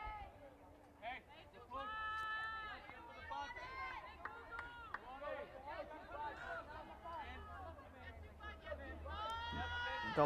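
Several high-pitched girls' voices calling and cheering from a softball dugout, overlapping one another, with long drawn-out calls about two seconds in and again near the end.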